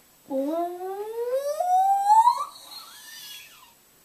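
A child's voice making one long vocal glide that climbs steadily in pitch for about two seconds, then breaks off into a fainter wavering tail.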